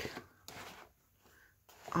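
A brief, quiet papery scrape of a handmade cardstock box being handled, about half a second in.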